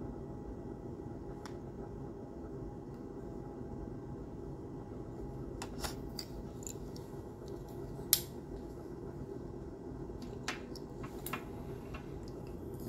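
A few small, sharp clicks from folding knives being handled, the loudest about eight seconds in, over a faint steady room hum.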